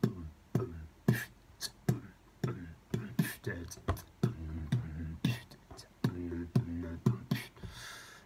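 Beatboxed kick drum made with the lips: a run of sharp mouth pops at about two a second, mixed with short stretches of low, pitched lip buzzing like a blown raspberry. A few breathy hisses fall in between. This is the drill of tensing a raspberry down to a single kick.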